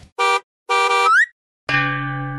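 Cartoon horn-like sound effects: two short honks, the second bending upward in pitch at its end. After a brief silence, a steady held tone begins near the end.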